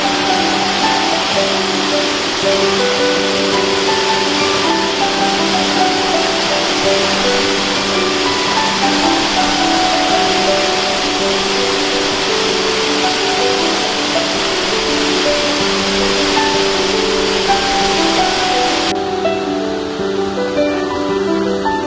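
Slow ambient music of long held notes over the steady rush of a waterfall. Near the end the water's high hiss suddenly drops away, leaving a duller rush.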